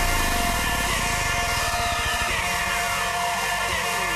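Hardcore electronic dance music in a breakdown with no kick drum: held synth tones over a fast low buzz that thins out. From about a second in, a long sweep falls steadily in pitch from very high to low.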